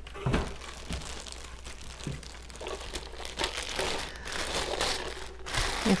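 A thin plastic bag crinkling and rustling as it is pulled off a manual push sweeper, with a few light knocks in the first two seconds.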